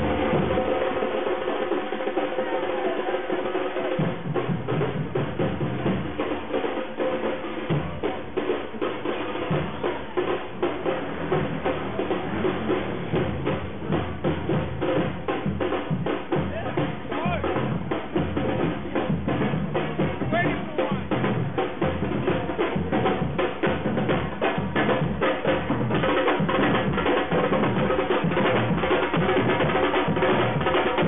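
A group of marching drums, silver-shelled with white heads, beaten with sticks in a steady, driving rhythm, with crowd voices underneath.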